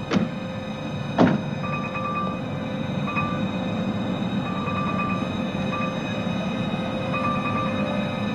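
A car door shutting with a solid thunk about a second in, after a lighter knock at the very start. Then a steady outdoor background with faint, short, repeated chirps.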